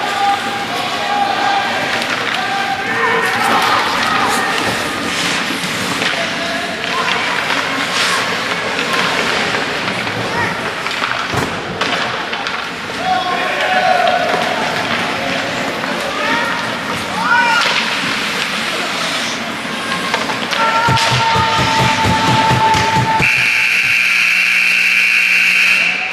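Ice hockey rink sound: spectators' voices and shouts over the clatter of sticks, skates and pucks knocking on the ice and boards. Near the end a loud steady tone sounds for about three seconds.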